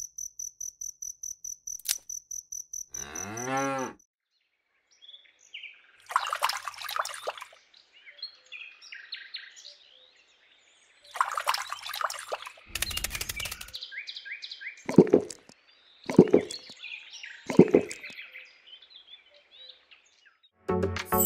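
Cows mooing, several separate moos with pauses between them, dubbed over toy cattle. A rapid high pulsing chirp, about five pulses a second, runs through the first few seconds.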